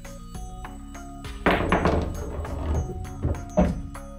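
Pool balls in play under background music: a sharp clack of balls colliding about one and a half seconds in, balls rolling across the cloth, then two quick knocks near the end.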